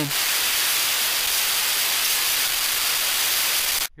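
A steady, loud rushing hiss with no pitch and no breaks, cutting off abruptly just before the end.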